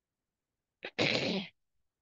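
A single sneeze from a person on the call: a very short catch of breath, then one sharp half-second burst of breath and voice.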